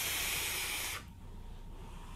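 Steady airy hiss of a draw being pulled through a vape tank, an Innokin Scion 2 on the Proton mod, with its adjustable airflow set fully open. The hiss stops sharply about a second in.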